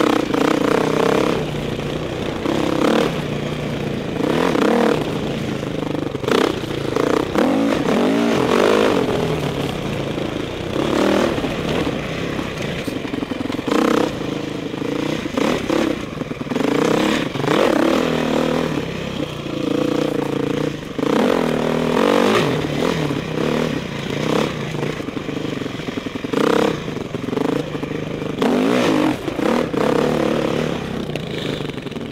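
Dirt bike engine heard close up from a helmet-mounted camera, revving up and falling back over and over as the throttle is opened and closed along a rough trail.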